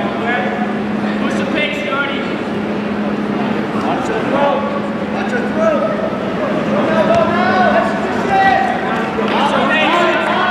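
Spectators and coaches in a gym shouting over one another, many voices overlapping, with a steady low hum underneath.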